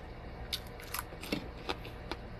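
Close-up eating sounds: a handful of sharp, crisp clicks and crunches as a person bites and chews food and handles it on a plate.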